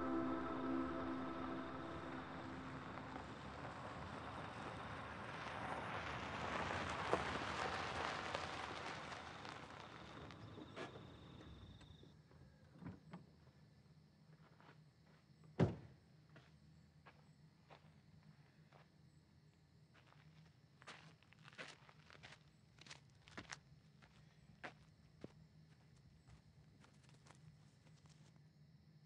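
A car driving up and stopping, its noise swelling and fading over the first dozen seconds, then a low steady hum. A single sharp thunk of a car door, followed by scattered footsteps.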